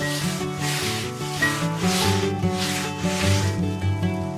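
Broom bristles sweeping a floor in repeated strokes, a brushing rasp about every two-thirds of a second, over soft background music.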